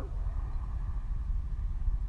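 Low, steady rumbling background noise of an indoor pool room, with no clear splashing.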